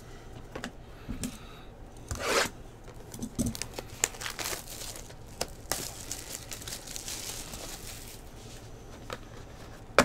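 Plastic shrink-wrap being ripped off a trading-card hobby box and crumpled by hand, with one loud rip about two seconds in, followed by several seconds of crinkling and small clicks as the cardboard box is opened.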